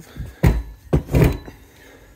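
Two dull knocks, a little over half a second apart, as a cast-aluminium intake manifold is handled and set against the wooden workbench.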